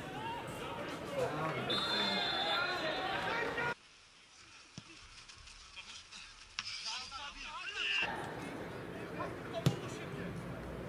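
Football-match sound: spectators talking and calling out, a long referee's whistle blast about two seconds in, then a quieter stretch with a few dull knocks, and a single sharp kick of the ball near the end.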